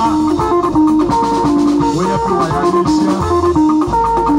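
Live band playing an instrumental passage on electric guitars, bass guitar, drum kit and hand drums, with no singing.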